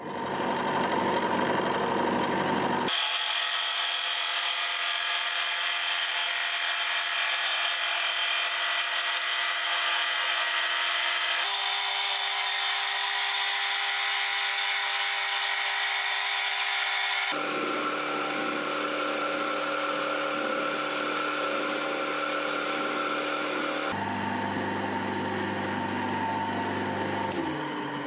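Metal lathe running while a wooden blank is turned to round and then sanded and polished: steady machine hum with the noise of cutting and abrasion. It comes in several cut-together stretches, each with a slightly different tone, changing suddenly about 3, 11, 17 and 24 seconds in.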